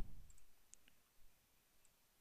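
A few faint, sharp clicks of a computer mouse, spread unevenly over two seconds.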